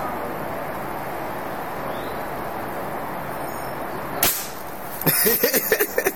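A single sharp shot from a Crosman air rifle about four seconds in, after a few seconds of steady background hiss.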